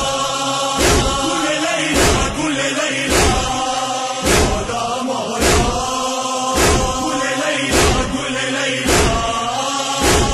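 A group of men chanting a noha, a Shia lament, in unison, kept in time by a loud unison thump about once a second, typical of matam chest-beating.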